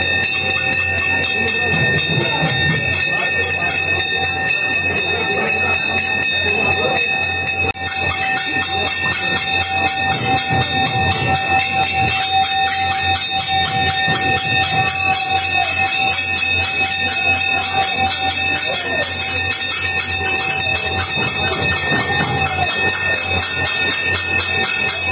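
Metal temple bells rung rapidly and without pause for the aarti, a steady run of quick, even clangs over sustained ringing tones.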